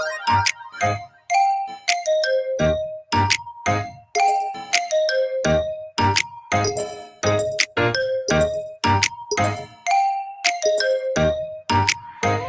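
Upbeat background music from the Quizizz quiz game, with a steady beat and a short melody of bright notes repeating over and over.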